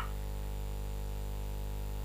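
Steady low hum with a faint buzz and hiss, unchanging throughout.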